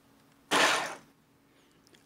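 RC car's electric motor and four-wheel-drive gearing whirring in one short burst of throttle, spinning the raised wheels freely for about half a second before cutting off.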